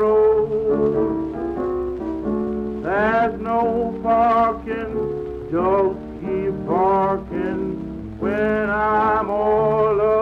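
Instrumental passage from a late-1920s jazz band recording: horns play the melody with notes that scoop up in pitch, about three seconds in, near six and seven seconds, and again a little after eight seconds, over a sustained lower accompaniment. A crackle of old record surface noise runs under it.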